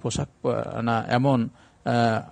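Only speech: a man lecturing in Bengali.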